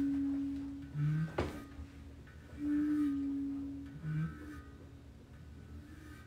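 Handpan played softly by hand: four single notes alternating a higher and a lower tone, each ringing and then fading. A sharp tap comes about a second and a half in.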